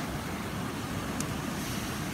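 Steady outdoor beach ambience: an even wash of noise with no distinct events.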